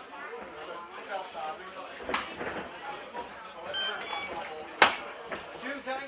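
Voices of cornermen and spectators calling out around a fight cage, with two sharp smacks, the louder one near the end.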